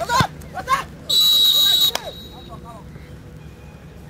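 A referee's whistle blown once about a second in, a single steady high-pitched blast lasting just under a second, after a shouted "go".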